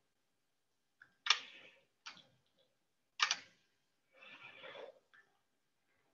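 Three sharp computer mouse clicks about a second apart, followed near the end by a short, softer rustling noise.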